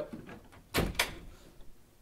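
A door closing: two quick knocks about a second in, a dull thud and then a latch-like click.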